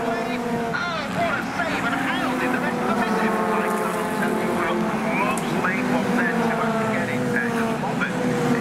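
Racing cars' engines running hard as the field goes past, several steady tones that fall slowly in pitch near the end, with indistinct voices over them.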